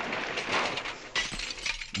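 Crash sound effect of an engine smashing into a van, dying away as shattering glass and clinking debris, with a fresh burst of crashing just over a second in.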